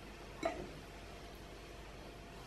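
A single short plastic click about half a second in, from the squeeze bottle of lemon juice being handled, over faint steady room hiss.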